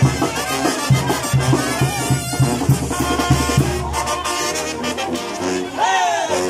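Brass band playing lively procession music, trumpets and trombones over a tuba marking a steady beat about twice a second.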